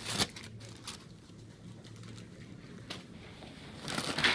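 Brief crinkle of a plastic-wrapped chocolate bar multipack being grabbed off a shelf. Then a quiet stretch with a low hum and a few faint clicks, and a crisp packet starts rustling as it is picked up near the end.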